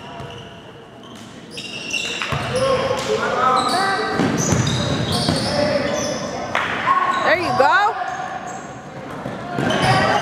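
Basketball bouncing on a hardwood gym floor with players' sneakers squeaking, which is loudest about three quarters of the way through. Indistinct shouting from players and spectators echoes in the large hall and grows louder after the first couple of seconds.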